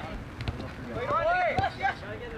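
Soccer players shouting calls to one another on the field, loudest from about a second in, over open-air background noise.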